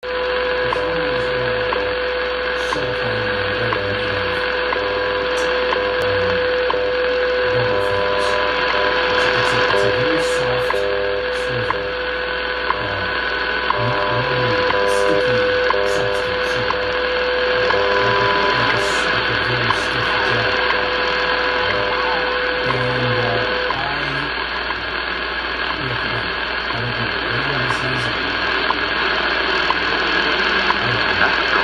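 WWV time signal station received on 10 MHz shortwave through a Kenwood R-2000 receiver's speaker: a steady tone with a low pulsing time code beneath it, over constant static hiss with scattered clicks. The tone stops about 24 seconds in.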